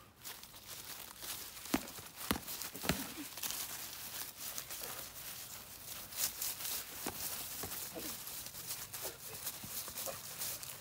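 Feet shuffling and scuffing on dry leaves and grass during a sparring bout, with scattered sharp knocks of boxing gloves. The loudest knocks come about two and three seconds in.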